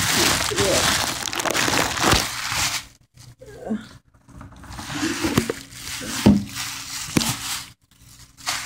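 Thin plastic bag rustling and crinkling as a plastic food container is handled in it, in two long stretches with a short pause between, and a few light knocks in the second half.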